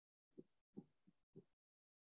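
Near silence, broken by four faint, short low thumps.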